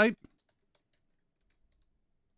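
A few faint computer keyboard key clicks, soft and scattered, as a web address is typed.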